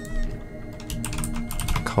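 Computer keyboard keys clicking in a quick, irregular run as a key combination (Ctrl+J) is pressed.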